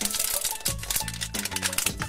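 Plastic wrapping of an LOL Surprise ball crinkling and tearing as a layer is peeled open, with background music.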